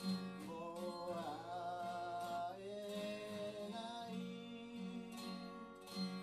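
A man singing over his own strummed acoustic guitar, a phrase with long held notes starting about half a second in.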